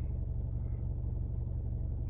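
Steady low rumble of an idling car, heard from inside the cabin.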